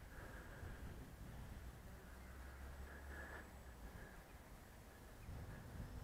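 Near silence: faint outdoor background with a low rumble of gusting wind on the microphone.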